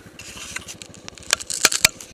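Close rustling and a few sharp clicks and knocks right at the microphone, the loudest near the end, as the camera is handled. A quad's idling engine pulses faintly underneath.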